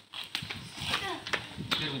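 Young people's voices talking and calling out, with a few light clicks or knocks among them.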